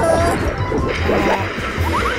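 Crash of a concrete cooling tower collapsing in a demolition, the noise of falling debris swelling about halfway through. Background music with a steady beat runs under it, with a few short rising cartoon sound effects near the end.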